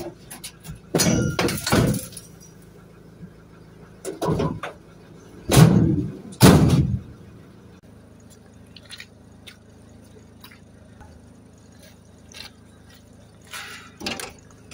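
Metal scrap and bicycles being handled and set down: a handful of loud clanks and knocks in the first seven seconds, then only scattered light taps.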